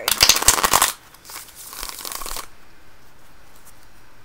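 A deck of tarot cards being shuffled: a loud, rapid riffle of flapping cards lasting about a second, then a second, quieter shuffle a moment later. The shuffle comes as a new card is about to be drawn.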